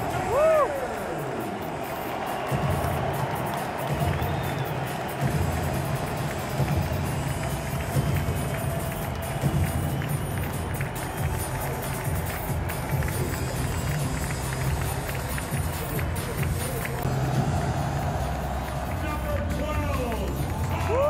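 Stadium public-address music with a steady heavy beat, echoing through a packed football stadium over the noise of a large crowd during team introductions.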